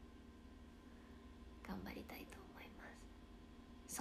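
Mostly quiet room tone with a faint steady hum, broken about two seconds in by a brief, quiet whispered utterance from a young woman; she starts speaking aloud again right at the end.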